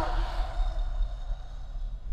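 Low, steady rumbling drone of film-trailer sound design, with a faint thin high tone in the middle.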